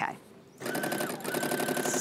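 Brother LB5000 sewing and embroidery machine starting to stitch about half a second in and running at a fast, even stitch rate with a steady motor tone, doing free-motion work; smooth.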